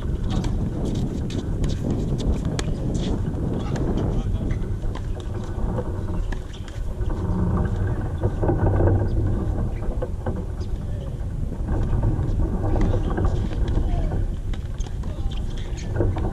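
Steady low rumble of wind on the microphone, with scattered faint clicks.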